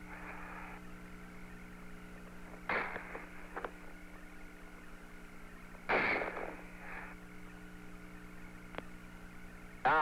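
Open Apollo lunar-surface radio link with a steady electrical hum and faint hiss. It is broken by two short bursts of noise, one about three seconds in and one about six seconds in, and a few faint clicks.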